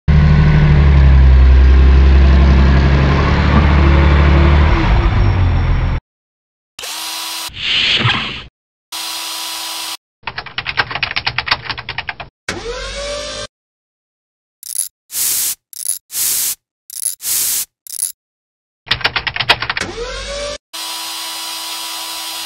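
Edited sound effects for a stop-motion animation: about six seconds of loud low rumble, then short clips cut in with dead silence between them, among them a whir with a steady tone, rapid keyboard typing clicks, a string of short high bleeps and sliding whooshes.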